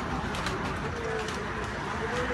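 Steady outdoor background noise, with a faint low wavering call about half a second in and again near the end.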